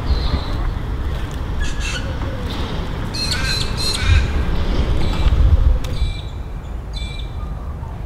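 Birds calling in about four short, high bursts, over a steady low rumble.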